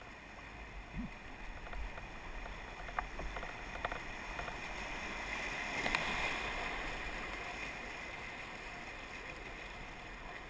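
Rushing water of a small river rapid growing louder as a kayak runs the drop, peaking in a burst of whitewater splashing over the bow about six seconds in, then easing off. A few sharp knocks come in the first four seconds.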